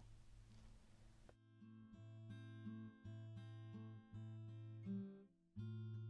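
Quiet background music with plucked guitar notes, coming in about a second and a half in and briefly cutting out just after the five-second mark.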